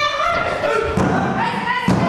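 Two thuds on a pro wrestling ring's mat, about a second apart, under women's voices shouting.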